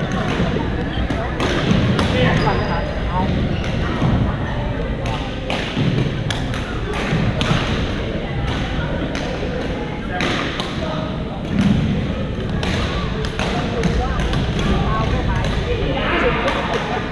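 Sharp, irregular hits of badminton rackets on shuttlecocks from several courts, echoing in a large gym, over the background chatter of players.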